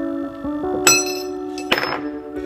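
A hollow square metal tube clanging twice, about a second in and again near the end, the first strike ringing on briefly. Sustained electronic tones that step in pitch play underneath.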